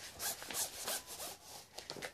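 A series of short, irregular scratchy rustling and rubbing sounds, as of something being handled.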